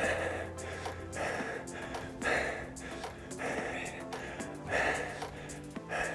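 Background music under a man's hard breathing: a forceful breath roughly once a second as he works through dumbbell lunges.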